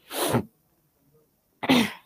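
A woman's two short, sudden bursts of breath from the throat, like coughs or sneezes, about a second and a half apart.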